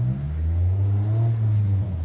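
A large engine running close by with a steady low drone, its pitch climbing slightly over the first second or so.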